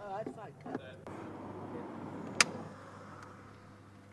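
A film clapperboard snapped shut once: a single sharp clack about two and a half seconds in, after a brief spoken call near the start.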